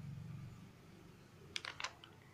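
A paper page being turned over by hand: a few faint, quick crisp paper rustles near the end.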